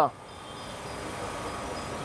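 Steady background noise, slowly growing a little louder, after a man's voice cuts off at the start.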